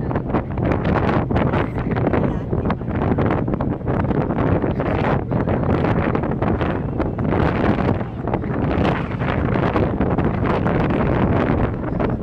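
Wind buffeting the microphone: a loud, rough rumble that rises and falls unevenly in gusts.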